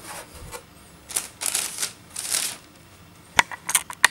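Cardboard shoe box and tissue paper being handled: a few short papery rustles, then a quick run of sharp clicks and taps near the end.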